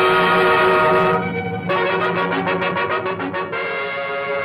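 Brass fanfare for a film company logo: a held chord, a brief dip, then a run of quick repeated notes leading into another held chord.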